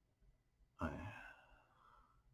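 A man's sigh: one sudden breath out a little under a second in, fading away over the next second.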